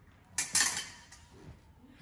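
Epee blades clinking: two quick, sharp metal-on-metal strikes in rapid succession, ringing briefly.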